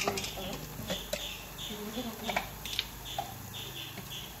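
Onion and tomato masala frying quietly in oil in a pan, a faint patchy sizzle with a few small clicks. A faint child's voice is heard in the background about two seconds in.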